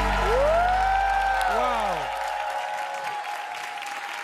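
The band's last sustained chord dies away over about two and a half seconds while the audience applauds, a tone gliding up and back down through it. Applause continues after the music has faded.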